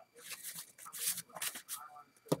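A small stack of cardboard baseball cards being handled, squared up and set down: a run of dry scuffs and flicks of card against card.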